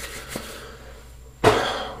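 A man's single short cough-like burst of breath about a second and a half in, sudden and loud, fading over about half a second.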